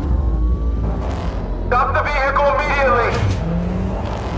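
Car engine running under a deep steady rumble, its pitch rising slowly in the first second as it accelerates. A voice speaks briefly in the middle.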